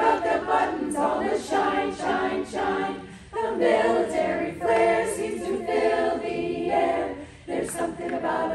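Women's choir singing a cappella, the phrases broken by short pauses for breath about three seconds in and again near the end.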